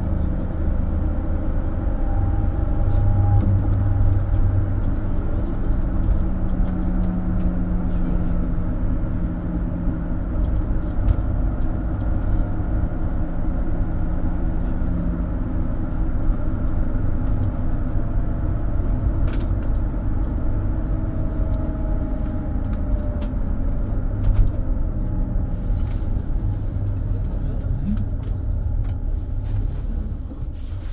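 Mercedes-Benz Sprinter City 45 minibus heard from inside while driving: a steady rumble of the diesel engine and road noise, its pitch drifting gently up and down with speed. The sound eases off near the end as the bus slows for a stop.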